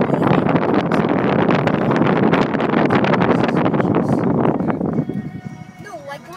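Loud rushing and buffeting noise with rapid irregular knocks, from a moving car's wind and road noise, over music; it drops away about five seconds in.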